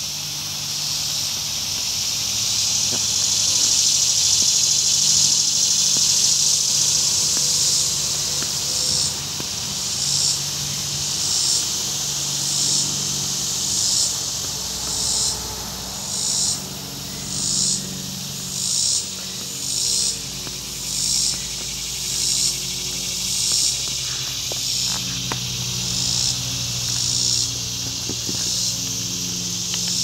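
Cicadas buzzing in a loud, high chorus, steady at first and then, from about a third of the way in, swelling and fading in regular pulses roughly once a second. A faint low hum lies underneath.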